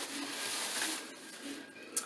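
Plastic shopping bag rustling and crinkling as it is handled: a crisp hiss for about the first second that then dies down, with a small click near the end.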